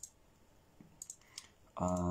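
A few faint, sharp clicks, then a man's voice starting a drawn-out, steady-pitched vocal sound near the end.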